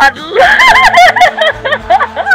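A woman laughing loudly, a quick run of rising and falling bursts of laughter.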